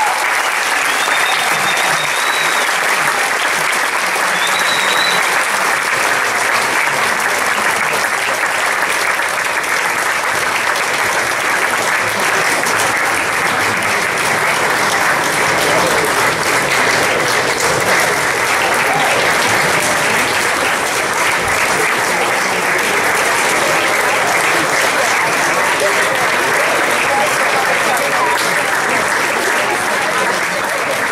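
Audience applauding steadily in a hall after a choir's final song, with a couple of short high whistles in the first few seconds.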